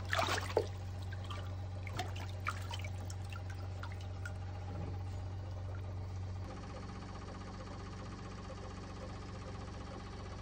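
Water splashing in an ice-fishing hole as a walleye is lifted out by hand: a quick flurry of splashes in the first second, then a few scattered drips and small splashes. A steady low hum runs underneath and changes about six and a half seconds in.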